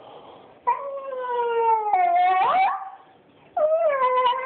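A long-haired small dog crying in long, wavering, howl-like whines: one drawn-out call that slowly falls and then bends up in pitch, a short pause, then a second call that starts high and falls. The crying is the dog's distress at its owners being away.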